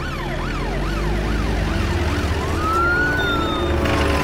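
Police jeep siren yelping, its pitch sweeping up and down about twice a second, then changing to one slower rising-and-falling wail a little past halfway, over a low engine rumble.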